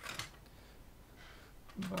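Mostly quiet room tone, with a few faint clicks in the first moment and a voice starting a word near the end.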